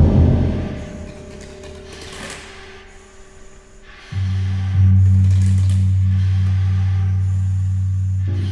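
Contemporary chamber ensemble music: the ring of a loud struck sound fades away over the first second, leaving a quiet pause. About four seconds in, a low sustained note enters, swells a moment later and is held to the end.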